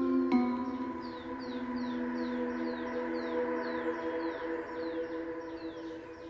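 Film background music: a sustained chord of held tones, with a faint series of short falling high notes repeating about three times a second above it, fading slowly.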